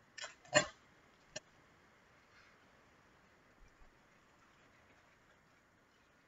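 Sticky tape and a cardboard egg carton being handled: a few short crinkles and taps in the first second and a half, the loudest about half a second in, then quiet room tone with two faint ticks.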